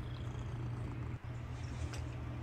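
A domestic cat purring steadily close to the microphone, with a brief break about a second in.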